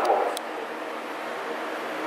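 Steady background room noise, an even hiss, with a short click just after the start and the last syllable of a man's word at the very start.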